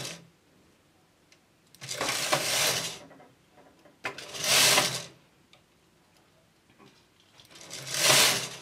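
Knitting machine carriage pushed across the needle bed, knitting rows of contrast yarn: a rattling swish lasting about a second on each pass, three passes with quiet between, the last starting near the end.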